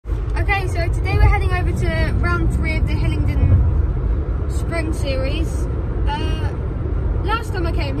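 Steady low rumble of a car's road and engine noise heard inside the cabin, under a voice talking.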